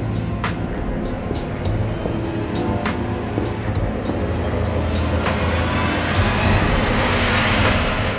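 Tense background music: a low sustained drone under held tones, with sharp ticking hits now and then. It swells into a rising rush of noise over the last couple of seconds.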